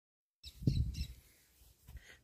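A brief low rumble on the microphone about half a second in, with a few faint high bird chirps over it.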